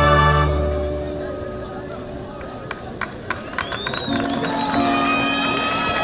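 A high school marching band's full brass-and-woodwind chord is cut off about half a second in and rings away. Scattered sharp claps follow, then a swell of crowd yelling and cheering with a horn-like tone through it.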